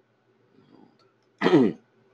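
A man clears his throat once, a short loud rasp with a falling pitch about one and a half seconds in.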